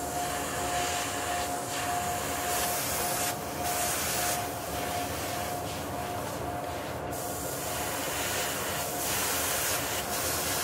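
Airbrush spraying paint in several short hissing bursts onto a fishing-lure body, over a steady machine hum with a constant faint whine.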